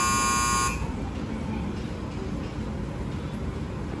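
Station platform departure buzzer: a steady electronic tone that cuts off suddenly less than a second in. After it comes the low, even background noise of the platform.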